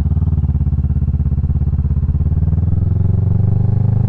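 Sport motorcycle engine running steadily under way, its pitch rising a little near the end.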